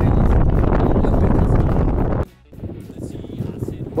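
Heavy wind buffeting the microphone in an open boat on choppy water. It cuts off suddenly a little past halfway, and lower, steadier wind noise follows.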